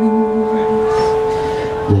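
A man singing one long, steady held note in a live blues song, with the band quiet underneath; the note breaks off near the end.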